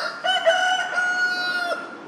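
A rooster crowing once: a short opening note, then one long held note that drops in pitch just before it stops.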